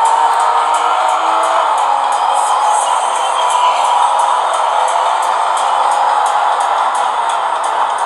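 Racing video game audio, a steady-beat soundtrack mixed with car sounds, played loud through the Ekoore Ocean XL phablet's built-in loudspeaker. It has almost no bass.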